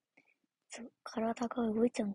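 Speech only: a young woman's voice talking briefly, starting just under a second in after a quiet start.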